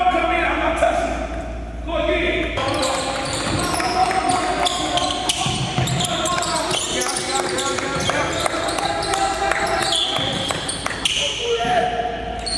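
A basketball bouncing again and again on a gym's hardwood floor, with people talking over it in the echoing gym.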